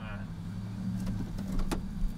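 Steady low hum of an idling car engine, with a faint click about a second in and another near the end.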